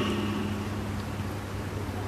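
A pause between spoken words, filled by a steady low hum and hiss from the recording's background.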